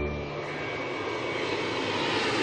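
Jet aircraft engine noise: a steady rushing sound that swells slightly, with a faint high whine running through it.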